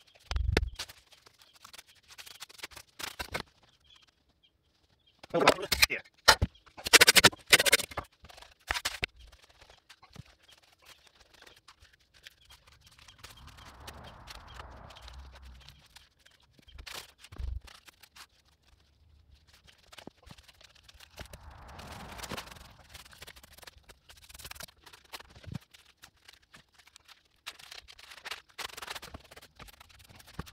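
Stones clacking and knocking as rocks are handled and set in place, in irregular hits with a loud cluster several seconds in. There are quieter stretches of scraping between the hits.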